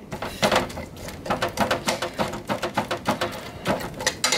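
A metal spoon scraping and knocking against a frying pan as it presses and mashes diced cooked asparagus: a quick, irregular run of short clicks and scrapes.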